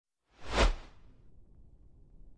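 A single whoosh sound effect for a logo intro: a quick rush that swells about half a second in and fades within about half a second, followed by a faint low rumble.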